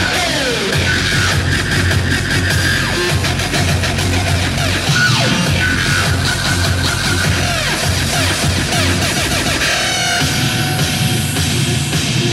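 Hardstyle electronic dance music from a live DJ set, loud and steady, with heavy bass. Synth sweeps fall about half a second in and again near the middle, and rise near the end.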